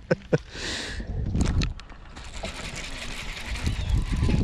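Baitcasting fishing reel: a few clicks as it is handled, a short hiss about half a second in, then a steady whirring from about a second in as the reel is cranked, over a low wind rumble on the microphone.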